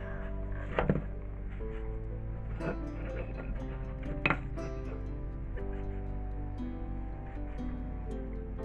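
Background music with a steady beat, over a few short knocks: a plastic round cutter being pressed through rolled dough onto the worktop, the two loudest knocks about a second in and just after four seconds.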